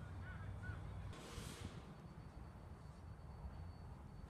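Low rumble of wind on the microphone, with a couple of short bird chirps near the start and a brief hiss about a second in as the SUV's rear tailgate is opened.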